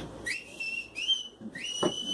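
A man whistling through his lips in imitation of a traffic policeman's whistle signalling a car to pull over: three short blasts, each sliding up in pitch and then holding, the third the longest.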